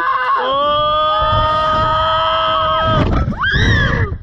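A rider on a slingshot reverse-bungee ride screaming: one long, steady scream held from about half a second in to about three seconds, then a shorter cry rising and falling near the end, with wind rushing on the microphone underneath.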